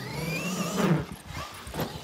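Traxxas XRT RC truck's brushless electric motor whining under throttle, its pitch rising over most of the first second, followed by a short rush of noise and a lower, fainter whine.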